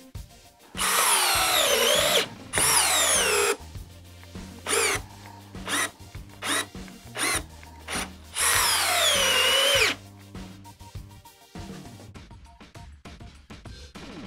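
DeWalt 12-volt Xtreme brushless cordless drill driving a long 3 1/8-inch GRK screw into stacked wood. It makes two long runs with the motor whine falling in pitch as it loads up, then a string of short trigger blips, then a last long run.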